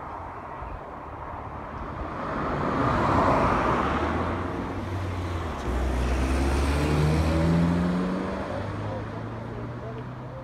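Cars passing at speed on a main road. One vehicle's tyre noise swells to a peak about three seconds in. A second car then passes close with a low engine hum, loudest from about six to eight seconds in, and fades away near the end.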